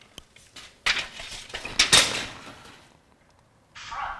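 Metal tools being handled by carpenters measuring a wall with a tape measure: a few light clicks, then louder clinks and clattering with rustling about one and two seconds in, dying away before a short hiss near the end.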